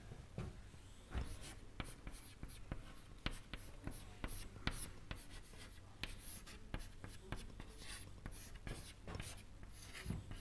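Chalk writing on a chalkboard: faint, irregular taps and short scratches, several a second, as symbols are written.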